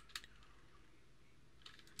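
Computer keyboard keystrokes: two quick clicks at the start and a faint one near the end, with near silence between.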